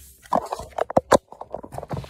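Handling noise from a phone held close to its microphone: a quick run of knocks, taps and rubbing as it is picked up and moved.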